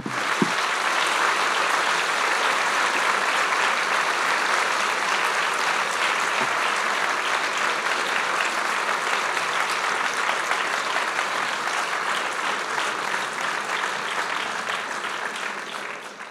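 Large lecture-hall audience applauding steadily, the clapping easing a little near the end.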